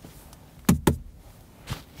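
Two quick, sharp knocks on a hard surface, less than a fifth of a second apart, then a faint tap near the end.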